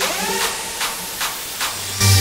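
Hardstyle track in a build-up, with the bass and kick dropped out: a hissing white-noise riser with a short upward sweep at the start and light hits about two and a half times a second.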